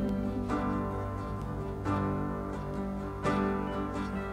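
Live worship music between sung lines: an acoustic guitar strummed over sustained keyboard chords, with a fresh strum about every second and a half.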